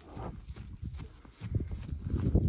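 A horse's hooves trotting on dry grassy ground: a run of dull, irregular thuds, thinning out in the middle and coming thicker and louder in the last half second.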